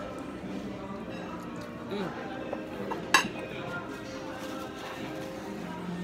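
Restaurant dining-room background of music and murmured talk, with one sharp clink of tableware about halfway through, the loudest sound here.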